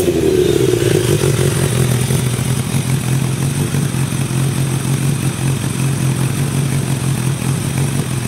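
Kawasaki ZRX1100 inline-four through an aftermarket exhaust: the revs fall back from a throttle blip during the first second or two, then the engine idles steadily.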